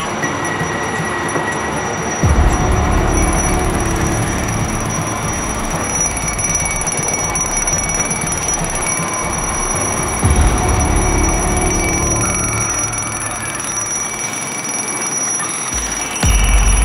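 Alarm on a downed firefighter's MSA G1 SCBA sounding as a steady high-pitched tone, with background music running underneath.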